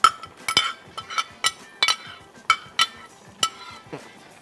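A utensil clinking against a container again and again, about a dozen sharp, ringing strikes at uneven intervals, as diced zucchini is knocked out of a plastic box into hot oil.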